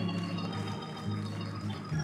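Organ holding soft, sustained chords, the low notes shifting once or twice.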